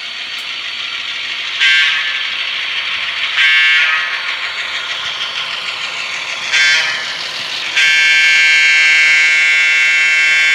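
Model passenger train running on the layout with a steady high-pitched whine. Three short, louder blasts come about two, three and a half, and six and a half seconds in, and a louder held tone sets in near the eight-second mark.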